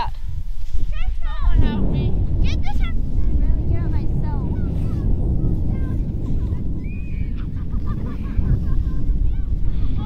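Wind buffeting the microphone, a loud, steady low rumble, with children's voices faint over it.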